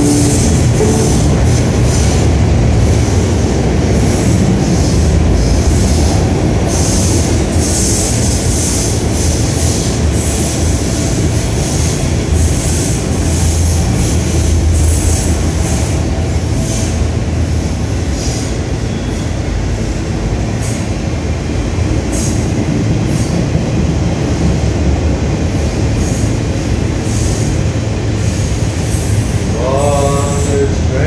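Train running past close by: a steady low rumble with irregular sharp high clacks and squeals from the wheels on the rails.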